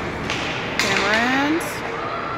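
A loud shout from a spectator, less than a second long, rising in pitch about halfway through, over the steady noise of an ice-rink crowd.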